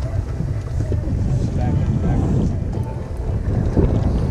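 Wind buffeting the microphone in a steady low rumble, with faint voices underneath.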